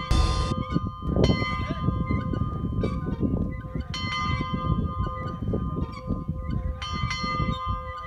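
A small church bell in a stone bell arch being struck, a couple of strikes near the start, one a little after a second in and two more near the end, its clear ringing tone carrying on between strikes. Rough low background noise runs underneath.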